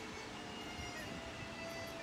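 Pause in speech: faint room hiss with a few faint, steady held tones.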